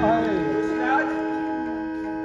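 A held harmonium chord sounds steadily throughout, while a stage performer's voice slides down in pitch in the first second and rises briefly again about a second in.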